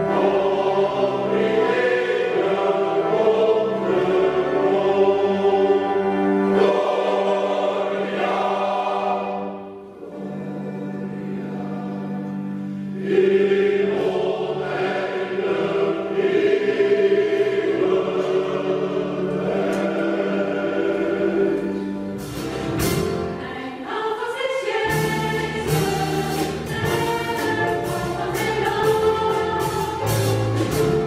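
Large choir with strong men's voices singing sacred music. The singing drops to a softer passage about ten seconds in and swells again about three seconds later. From about two-thirds of the way through, sharp percussive hits join the singing.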